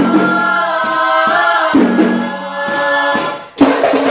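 A group of women singing together in unison, accompanied by hand-held frame drums (rebana) struck about twice a second, with a bright jingling ring on each stroke. Near the end the drums drop out for a moment, then come back in on a loud stroke with busier beating.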